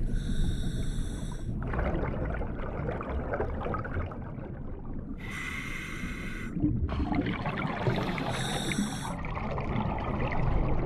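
Scuba diver breathing through a regulator: three hissing inhalations of a second or so each, a few seconds apart, with bubbling exhalations and a low underwater rumble between them.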